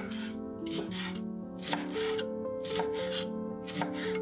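Chef's knife chopping fresh cilantro on a wooden cutting board, the blade striking through the leaves onto the board about twice a second.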